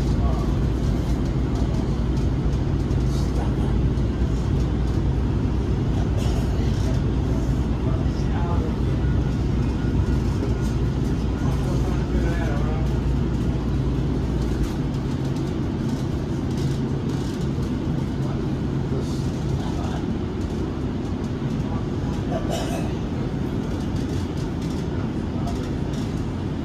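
Ride noise inside a moving light-rail car: a steady low rumble and hum from the running train, with low tones in the hum dropping out about fifteen and twenty seconds in.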